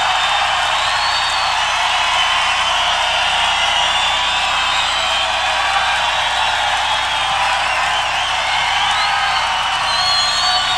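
Concert crowd cheering, screaming and whistling, a steady wash of noise with high whoops and whistles gliding up and down over it, thin-sounding with no bass.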